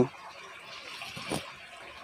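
Faint water sounds in a shallow plastic tub of koi: the water sloshing and trickling as the fish move and a hand touches it, with one small splash a little past the middle.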